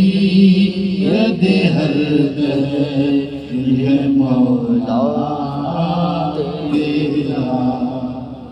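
Devotional chanting by voice, without instruments, in long held and wavering notes.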